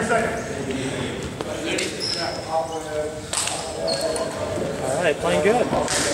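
Echoing players' voices in a gymnasium, with a basketball bouncing on the hardwood floor and a couple of short high sneaker squeaks.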